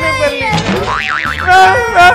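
A cartoon comedy sound effect, a springy wobbling boing that warbles rapidly up and down, laid over background music with a steady beat. Exaggerated wailing voices come just before and after it.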